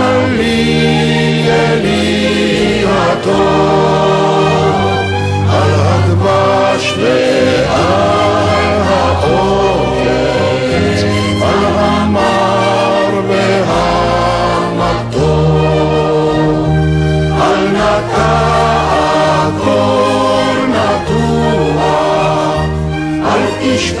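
Recorded song: many voices singing together as a choir over orchestral backing with strings and a steady bass line.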